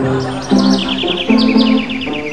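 Cartoon 'seeing stars' sound effect of birds tweeting, in quick runs of high chirps that fall in pitch, the comic sign of being dazed by a blow. It plays over background music.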